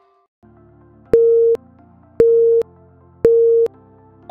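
Three short electronic countdown beeps about a second apart, each one steady mid-pitched tone, over faint background music: a workout interval timer counting down the last seconds of an exercise.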